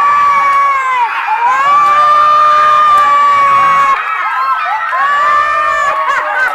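Group of children shouting and cheering together in long, high-pitched held screams, one after another, the longest lasting about two and a half seconds.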